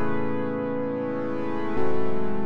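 A keyboard holds an A major 9 chord, then changes to a G-sharp dominant 7 sharp 5 flat 9 chord near the end.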